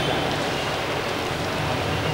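Steady, even hissing background noise with no distinct events, filling a pause in a man's speech at a microphone.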